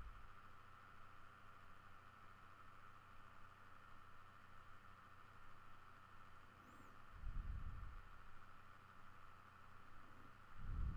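Near silence: faint steady room tone and microphone hiss, with one brief low, muffled sound about seven seconds in.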